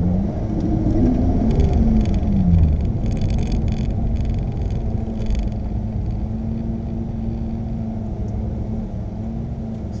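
Ferrari 458's 4.5-litre V8 engine heard from inside the cabin, its pitch rising and falling over the first two seconds or so, then running steadily.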